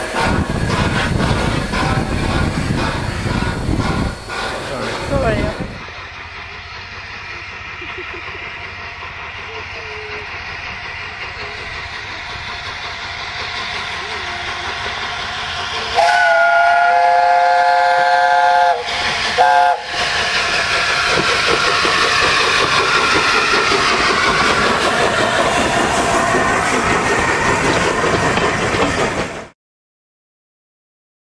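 A steam locomotive, the Peppercorn A1 Pacific 60163 Tornado, sounds its multi-note chime whistle for about three seconds, with a brief second blast just after. It then passes close by with its train in a loud, steady rush of exhaust and wheels on the rails.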